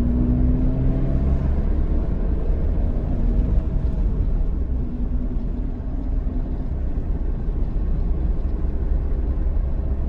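Car cabin noise while driving: a steady low engine and road rumble, with a faint engine hum that drifts slightly upward in pitch over the first few seconds.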